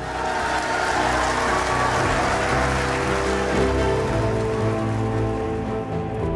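Audience applauding, with background music playing underneath; the applause dies away near the end.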